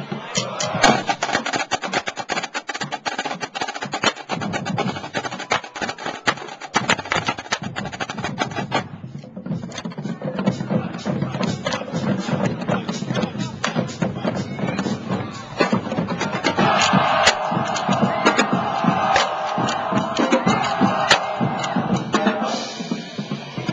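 Marching-band snare line playing a fast drum cadence on snare drums while marching, with a short break about nine seconds in. Near the end, steady pitched tones come in over the drumming.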